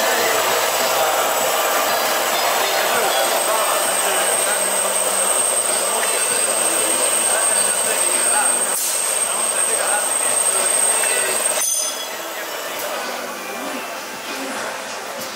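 Loud, steady din of a busy trade-fair hall, mixed crowd chatter and running machinery, with a thin high whine through most of it. The noise drops off suddenly near the end.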